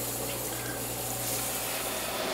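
A steady low hum with an even hiss over it.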